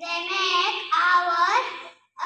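A young girl singing into a handheld microphone, her voice gliding between held notes.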